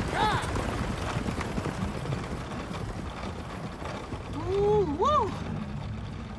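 Horse-drawn stagecoach on the move: a steady clatter of hooves with the rattle and creak of the coach and harness. There is a brief voice call at the start and a louder two-part rising-and-falling call near the end.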